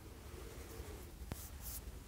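Quiet room tone with one faint click about a second in and a brief rustle of clothing near the end as hands are raised.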